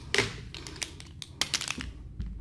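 Light clicks and taps of marker pens being handled as one is picked up from the tray, a few near the start and a quick cluster about one and a half seconds in.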